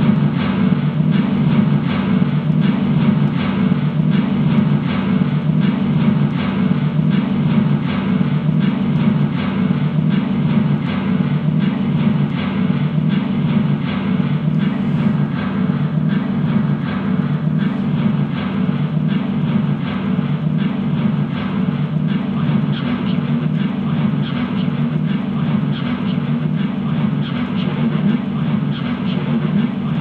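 Noise music played live on effects gear through a guitar amplifier: a dense, continuous, droning wash, heaviest in the low range, with an even, fast pulsing throb running through it.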